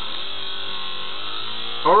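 Ball magnet spinning on the hall-sensor-driven flat copper coil of a homemade magnet pulse motor, giving a steady buzz whose pitch rises slightly about half a second in and then holds.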